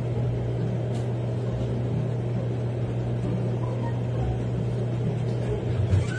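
A steady low hum, as from room machinery such as an air conditioner or a computer, with a faint click about a second in.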